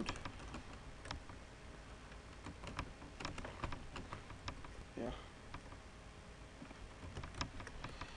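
Computer keyboard typing: irregular, quick keystrokes as a line of code is typed.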